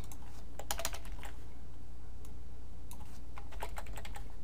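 Computer keyboard keystrokes: a quick run of taps about half a second to a second in, then a few scattered key presses near the end, over a steady low hum.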